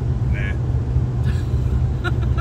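Steady low rumble of road and engine noise inside a moving car's cabin, with a brief vocal sound about half a second in.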